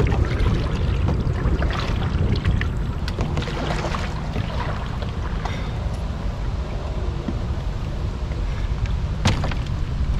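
Canoe paddle strokes splashing in choppy water, with wind buffeting the microphone as a steady low rumble. A single sharp knock comes near the end.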